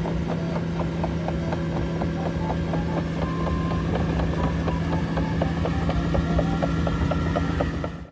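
Caterpillar AP655F tracked asphalt paver running steadily as it crawls along: a constant diesel hum with a fast, even run of light clicks from its crawler tracks.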